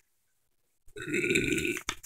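A single burp about a second long, starting about a second in.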